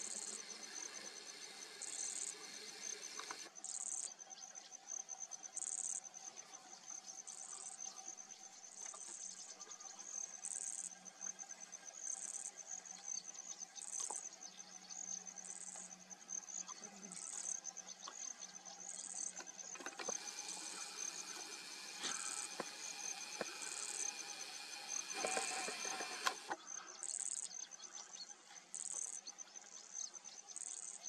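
Grassland insects calling: a steady high cricket trill, with a second insect chirping in short bursts about once a second. A few seconds of rushing noise come in about twenty seconds in.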